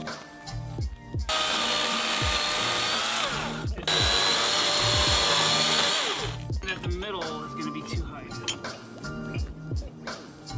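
DeWalt battery-powered chainsaw cutting through a wooden deck beam. It runs in two steady stretches of about two and a half seconds each, with a brief break between them.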